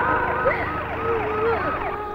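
Police vehicle siren sounding, a pattern of short falling pitch sweeps repeated a few times a second.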